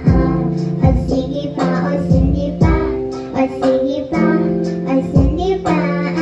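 Female vocalist singing into a microphone over an instrumental accompaniment with a steady beat of low thumps.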